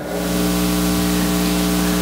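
A steady electrical buzz with a hiss over it, holding one pitch and about as loud as the speech around it.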